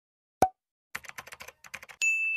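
Intro sound effects: a single short pop about half a second in, then a quick run of about a dozen keyboard-typing clicks.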